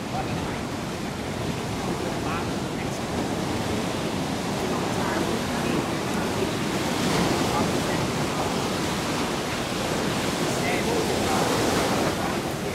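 Ocean surf breaking on a beach: a steady wash of waves that swells about seven seconds in and again near the end.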